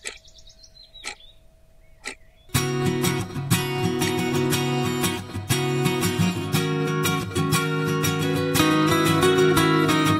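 A bird's short trilled chirps and a few sharp clicks, then acoustic guitar music that starts abruptly about two and a half seconds in and carries on loudly.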